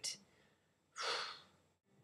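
A single audible breath out from a woman, about a second in, lasting about half a second.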